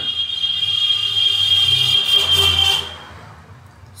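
A steady high-pitched whine over a low hum, ending about three seconds in.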